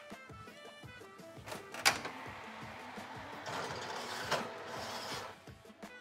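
Combi steam oven being loaded: a sharp click from the door about two seconds in, then a steady rushing noise from the running oven for about three seconds, with a second click partway through. Soft background music plays throughout.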